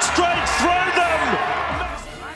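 Television rugby league commentary: a commentator's raised, excited voice over faint background music.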